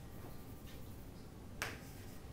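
Chalk on a chalkboard as letters are written: a couple of faint short strokes, then one sharp tap of the chalk against the board about three-quarters of the way through.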